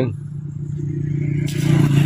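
A motor vehicle passing on a nearby road: a steady engine drone that grows louder as it approaches, with tyre-and-road hiss swelling in during the second half.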